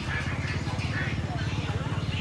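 Low, steadily pulsing rumble of a small motorbike engine running close by, under indistinct chatter of market voices.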